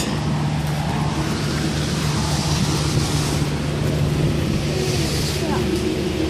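Antique tractor engine running steadily under load, driving a threshing machine by a long flat belt, with a constant low hum under the machinery noise.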